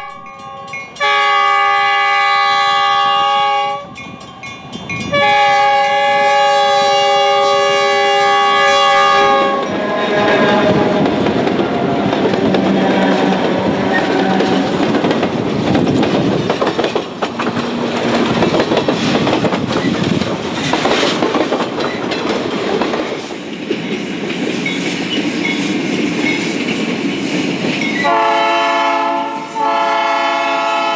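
Diesel locomotive sounding its multi-chime air horn in two long blasts, a chord of several tones. It then passes close by with loud rumbling and rattling of wheels and cars on the rails. The horn sounds again near the end.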